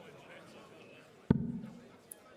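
A steel-tip dart striking a bristle dartboard once, about a second in: a sharp thud with a short low ringing after it. A low crowd murmur from the hall runs underneath.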